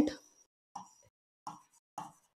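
A few faint, short taps of a stylus on an interactive display screen while numbers are written by hand, at irregular intervals, after a woman's voice trails off at the start.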